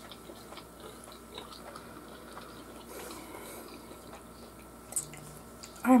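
A person chewing a mouthful of mac and cheese with the mouth closed: soft, scattered wet mouth clicks, with a sharper click about five seconds in.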